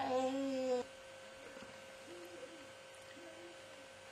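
A single hooting "ooh" voiced on one steady pitch for under a second at the start, followed by a few faint, short voice sounds.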